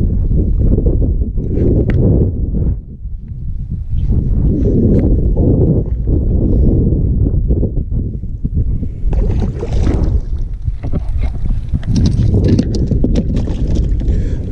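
Strong wind on the microphone over water lapping against a plastic fishing kayak. From about nine seconds in, a run of sharp clicks and knocks as a small largemouth bass is reeled in and landed in the kayak.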